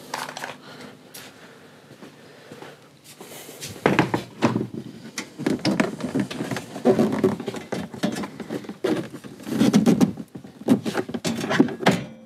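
Plastic rear cargo-sill trim of a Toyota Prado 150 being pried up by hand. After a few quieter seconds comes a run of clicks, knocks and clunks as its retaining clips are forced to pop free.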